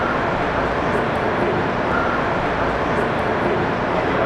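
Steady city street noise, a constant rumble of traffic between buildings, with a faint brief high tone about two seconds in.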